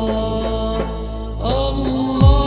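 Arabic nasheed: a male voice chanting in long held notes over a steady low drone, with a new phrase sliding in about a second and a half in.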